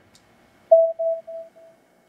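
Teenage Engineering OP-1 synthesizer playing back the beat's subtle atmosphere part: a soft, pure mid-pitched tone that enters under a second in and repeats four times, each repeat fainter, like an echo dying away.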